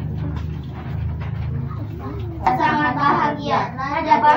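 Children's voices singing together, starting loudly about two and a half seconds in, over a low steady hum.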